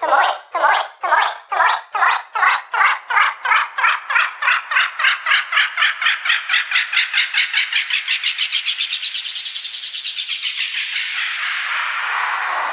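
Electronic dance music build-up: a repeated synth hit that speeds up from about two a second into a fast roll, each hit rising in pitch, then blurring into a rising noise sweep over the last couple of seconds.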